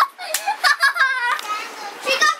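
A young boy laughing and squealing excitedly in several short, high-pitched bursts that die down near the end.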